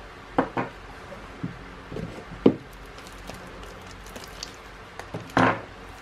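Handling of trading cards and foil booster packs over a cardboard bundle box: a few scattered light taps and knocks, the sharpest about halfway through and another near the end.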